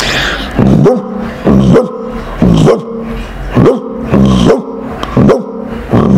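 A man's vocal imitation of a dog barking into cupped hands, short barks repeated about once a second.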